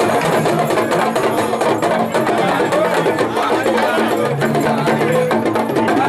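Several Yoruba hourglass talking drums (dùndún) beaten together in a fast, dense rhythm.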